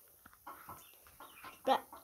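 Chickens clucking quietly, a few short clucks.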